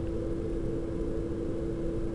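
A steady background hum holding one constant tone over a low rumble, unchanging throughout.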